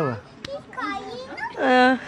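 Speech: a person's high-pitched voice, with one louder held sound near the end.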